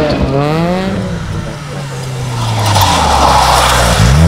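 Ford Ka rally car's engine revving hard on a gravel stage, its pitch climbing through the first second and then dropping away as the car goes past. A rush of tyre and gravel noise rises near the end.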